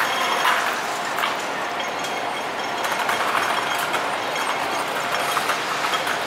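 Hong Kong pedestrian crossing's audible signal ticking during the green walk phase, over busy street noise. This ticking is the sound the speaker calls a strange signal sound.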